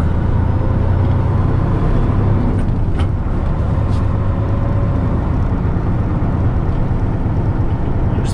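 Diesel semi-truck engine pulling away from a stop under throttle, heard inside the cab as a heavy low rumble that is strongest for the first couple of seconds and then eases. A single sharp click about three seconds in.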